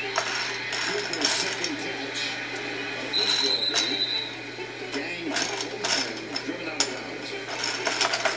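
Scattered light clicks and clinks over faint background voices, with a steady high beep lasting about a second, about three seconds in.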